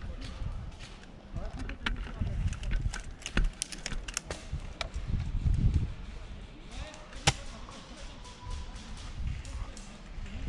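Scattered sharp pops of airsoft guns firing across the field, a dozen or so, the loudest a close crack about seven seconds in, over a low rustle of movement in dry leaves.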